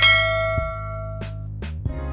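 A bell chime sound effect struck once, ringing and fading over about a second and a half, over background music with a steady bass line.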